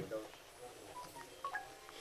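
A quick run of about five faint, short electronic beeps at different pitches, about a second in, during a pause in a man's speech.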